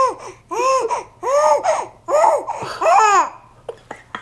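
Infant babbling: a run of about five high, drawn-out calls, each rising and then falling in pitch.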